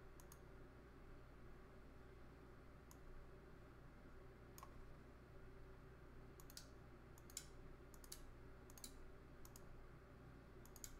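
Faint, sharp clicks as relays on a 16-channel relay controller board are switched on with mouse clicks in the control software: a few scattered clicks early, then a quick run of them from about six and a half seconds in. A low steady hum runs underneath.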